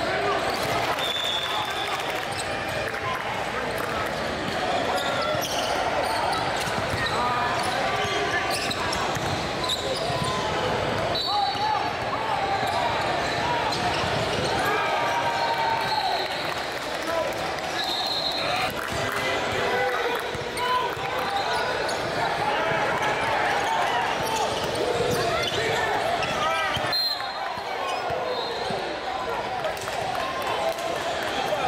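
Live basketball game in a gym: many voices chattering and calling out, a basketball bouncing on the hardwood floor, and several short high squeaks of sneakers on the court.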